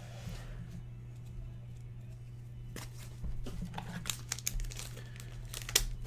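Hands opening a trading card box and handling its foam insert and packaging: quiet rustling and crinkling, with a run of sharp clicks and crackles from about three to five seconds in, over a steady low hum.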